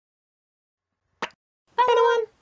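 A single short pop about a second in, then a short, high-pitched voice-like call near the end, as part of a channel logo intro sting.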